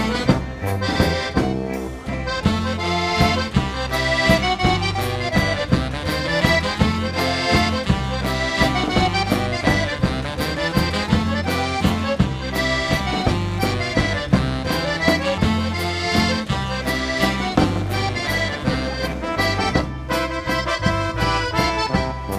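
Accordion-led polka band playing a waltz, with a steady, even beat.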